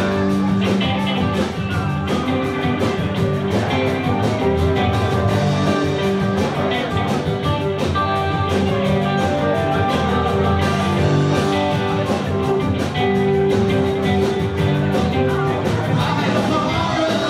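Live rock band playing a song, with guitars over bass and a steady drum beat, continuous and loud throughout.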